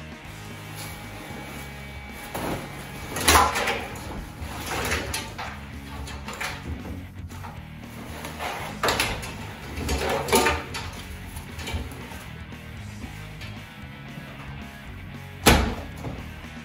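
Background music, with knocks about 3 and 10 seconds in as pack gear goes into the washer. A sharp, loud clunk from the front-loading washing machine comes near the end.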